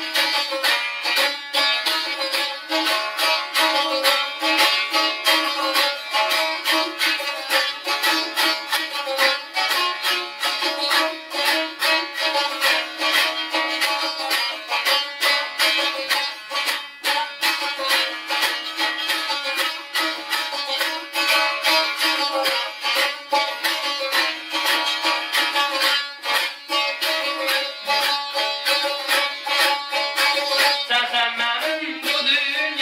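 Solo saz, a long-necked Turkic lute, strummed rapidly in a steady stream of quick strokes over ringing drone strings, playing an ashiq melody.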